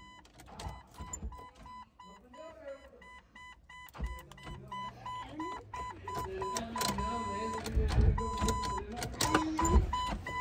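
A Jeep Cherokee's electronic warning chime beeping in the cab, one steady high pitch repeating about three times a second, with a few longer beeps near the end, while the engine won't start. A low rumble sounds under it near the end.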